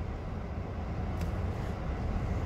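Steady low rumble of idling vehicle engines heard from inside a car's cabin, with a faint click about a second in.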